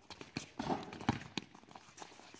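Basketballs being dribbled on a hard court: a run of short, irregular bounces, about three a second, from more than one ball.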